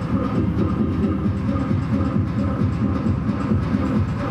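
Electronic dance score with a fast, even, clattering low pulse under sustained droning tones.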